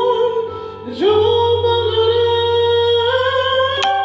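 A woman singing long held notes with vibrato into a microphone, scooping up into a new sustained note about a second in. A brief sharp click sounds near the end.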